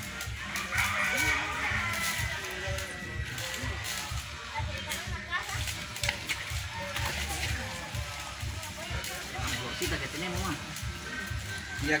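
Muddy water sloshing as tyres are shifted in a flooded pit, under background music and voices.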